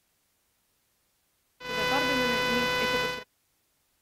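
A person's voice mixed with a steady buzzing tone. It cuts in suddenly about one and a half seconds in, holds at an even level and cuts off just as suddenly about a second and a half later, against near silence.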